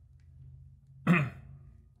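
A man clearing his throat once, a short burst about a second in, after a near-silent pause.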